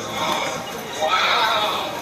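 A man's high, excited cry that rises and falls like a whinny, about a second in, over the general sound of a busy store.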